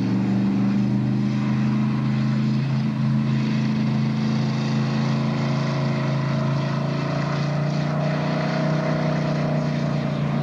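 V8 engine of the McLean monowheel, an eight-cylinder Buick, running steadily, its pitch creeping up slightly in the second half.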